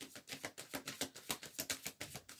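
A deck of tarot cards being shuffled by hand: a fairly faint, rapid run of light card clicks and snaps, about ten a second.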